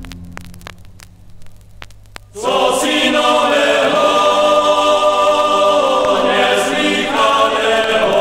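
Choir singing on a vinyl record. After a quiet gap with a few clicks and crackle from the record surface, the choir comes in suddenly about two and a half seconds in, loud and singing in parts.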